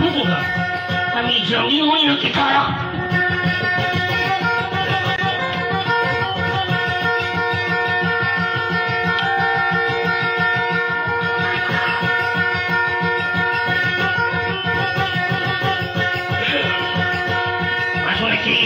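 Two acoustic guitars playing a lively strummed instrumental passage, with a man's voice coming in briefly about two seconds in and again near the end.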